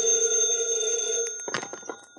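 Telephone bell ringing, a radio-drama sound effect, fading away, then a few clicks about one and a half seconds in as the receiver is picked up.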